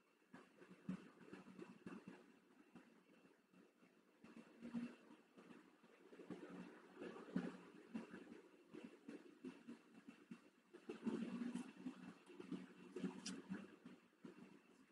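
Faint, irregular rustles and soft taps of a person moving her body freely, with a louder cluster a few seconds before the end.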